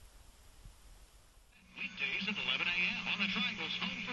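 Faint hiss, then about two seconds in a man's voice from an AM broadcast comes through the loudspeaker of an All American Five tube radio, with a steady hum under it.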